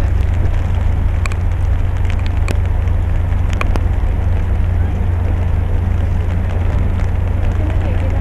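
Wind rumbling steadily on the microphone, with an even hiss of rain and a few sharp ticks in the first half.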